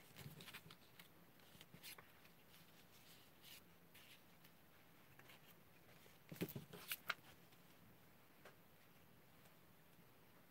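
Faint rustling and sliding of small stamped paper test pieces being moved around on a sheet of paper, with a short cluster of louder taps and rustles about six to seven seconds in.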